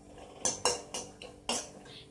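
A metal spoon scraping and clinking against a stainless steel pan as cashew pieces are stirred: a few short, separate strokes.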